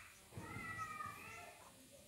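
Dry-erase marker squeaking faintly on a whiteboard while words are written, in thin high squeals that wobble in pitch, mostly in the first second and a half.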